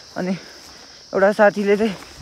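Steady high-pitched chirring of insects in the surrounding vegetation, under a man's voice in two short phrases: a brief one at the start and a longer one just past the middle.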